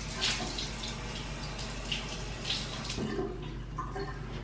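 Bathroom sink faucet running into the basin, with a few splashes as cupped hands throw water onto the face.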